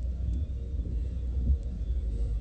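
Low, steady rumble of a police car heard from inside its cabin, with a brief bump about halfway through.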